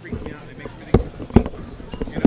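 Two sharp knocks about half a second apart, over background voices.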